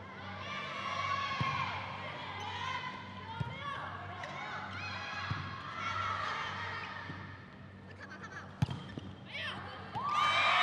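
Volleyball being struck during a rally, sharp slaps of the ball about four times, the loudest near the end. Throughout there is high-pitched shouting and cheering from the girls' teams.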